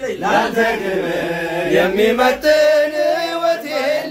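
Men's voices chanting a song together, with long held notes.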